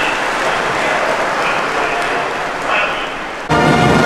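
Audience applauding steadily. About three and a half seconds in, brass music starts abruptly and louder.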